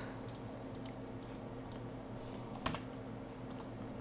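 A handful of scattered light clicks from a computer keyboard and mouse, the loudest about two-thirds of the way through, over a faint steady hum.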